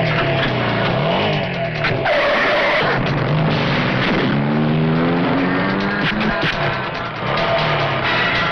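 Dramatic film background music mixed with motorcycle engine sound effects, the engine rising in pitch twice, with tyre skidding.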